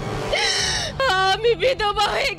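A woman's high, drawn-out wailing cry of grief, breaking into sobbing, voiced crying.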